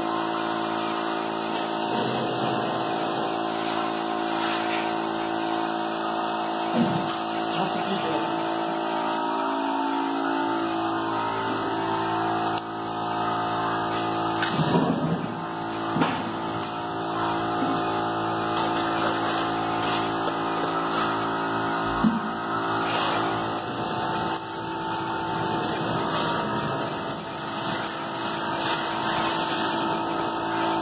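Steady hum of a running machine motor, holding several steady tones throughout, with a few brief knocks scattered through it.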